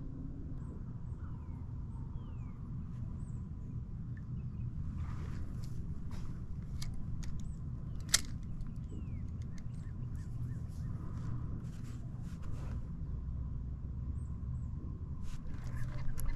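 Faint birds chirping and whistling over a steady low rumble, with scattered small clicks from a spinning rod and reel being handled and one sharper click about halfway through.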